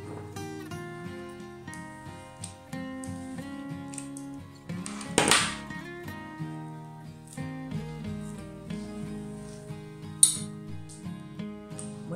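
Background music of plucked acoustic guitar notes. A brief scraping noise comes about five seconds in, and a sharp click about ten seconds in.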